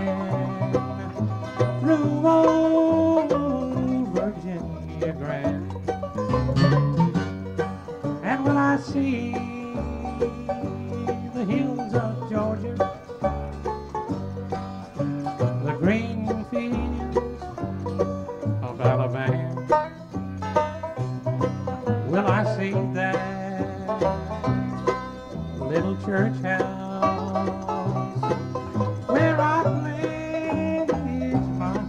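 A live bluegrass band plays an instrumental break between sung choruses. Banjo, mandolin, fiddle, guitar and bass play together in a steady rhythm.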